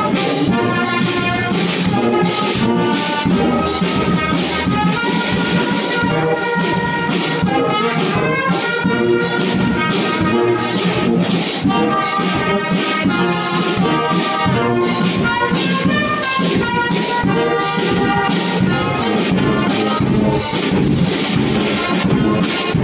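Brass band playing: trumpets and tubas carry the tune over a steady beat from a bass drum and snare drum.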